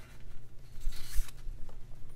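Paper sliding and rustling as scrapbook paper and a planner page are positioned on a sliding paper trimmer, with a couple of soft knocks about a second in.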